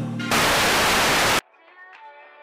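A loud burst of TV-static noise lasting about a second, used as an editing transition, cuts off suddenly. Soft electro-pop music then begins.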